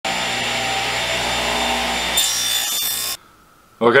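Table saw running, its blade cutting a small piece of wood pushed through on a crosscut sled. The sound turns brighter about two seconds in and cuts off abruptly a little after three seconds.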